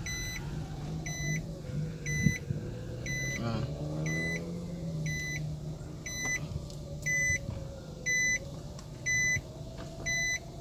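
A car's in-cabin warning chime beeping evenly about once a second, louder in the later part, over the low, steady hum of the car's engine as it creeps along.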